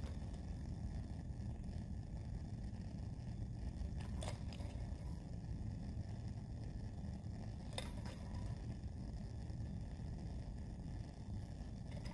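Quiet room hum with a few faint clicks of plastic being handled: test-tube caps being pulled off and a plastic dropper bottle squeezed while reagent drops are added, with two clearer clicks about four and eight seconds in.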